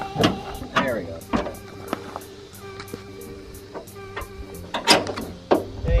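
Background music with a steady beat, with voice-like sounds in the mix.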